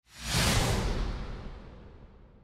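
Whoosh sound effect marking a title-card transition. It is a rush of noise that swells in quickly and fades away over about two seconds, the high end dying out first, over a low rumble.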